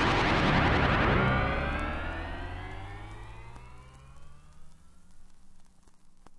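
The end of a dance megamix: the full, loud mix drops away after about a second, leaving an electronic sweep of several tones gliding upward together as it fades out, with a few faint clicks near the end.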